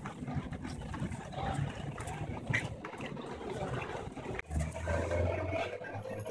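Street ambience: a steady low traffic rumble under general background noise, with a louder low hum coming in about four and a half seconds in.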